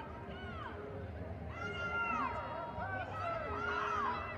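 Several high-pitched voices of lacrosse players calling and shouting across the field, overlapping, loudest about two seconds in and again near the end, over a steady low hum.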